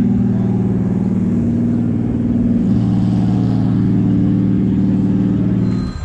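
A car engine idling steadily close by, a low even hum that shifts slightly in pitch about halfway through. It cuts off sharply just before the end.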